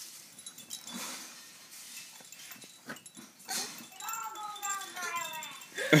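A baby whining and fussing as she strains to roll over, with faint movement sounds, then a run of short, high, whiny cries that slide down in pitch over the last couple of seconds.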